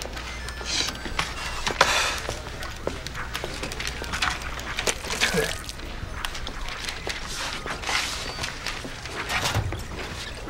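A man spitting, the spit splashing, among a series of short hissy bursts of mouth noise.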